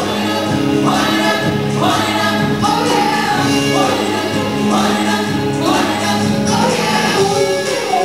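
Live pop music: female lead vocals with a group of backing voices over a band with guitars and steady held bass notes.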